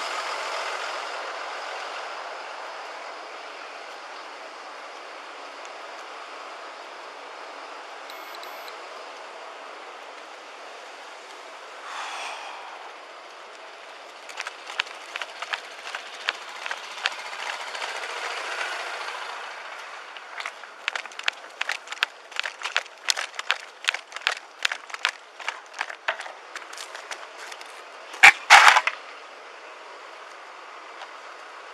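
Footsteps and rattling gear heard through a body-worn camera as its wearer walks: a run of sharp clicks, irregular at first and then about three a second, with a loud knock or brush against the microphone near the end. It opens over a steady street-traffic hiss that fades within the first few seconds.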